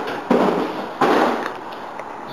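Three sudden loud bangs, each a burst of noise that dies away over about half a second, about half a second apart.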